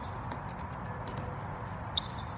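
BMX bike ridden on an asphalt driveway: faint, irregular clicks and knocks from the bike and its tyres over a steady background hiss, with a sharper click near the end.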